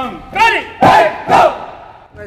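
Cadets' shouted drill calls while marching in step: four loud, short shouted calls about half a second apart, the loudest about a second in.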